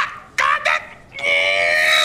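A high-pitched voice holding one long, steady squeal, starting a little past a second in, after a short vocal sound just before it.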